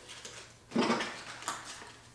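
Small items being handled on a table: a short clatter about three-quarters of a second in that fades out, then a fainter click.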